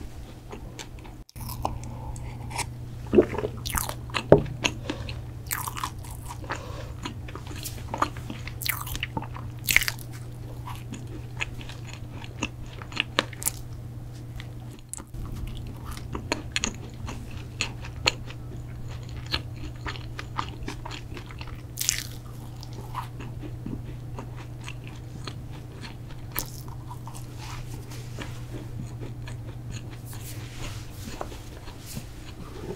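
Close-miked bites and chewing of a chocolate protein cookie: sharp, crisp crunches at irregular intervals, the loudest about three, four and ten seconds in and again about 22 seconds in, with quieter chewing between. A steady low hum runs underneath.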